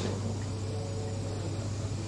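Steady low hum with even hiss and no speech: the background noise of a recorded interview in a pause between answers.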